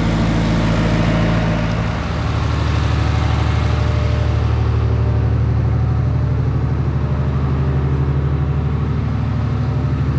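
A tractor engine running steadily as it drives a water pump. About two seconds in, the sound changes abruptly to another engine idling with a fast, even throb.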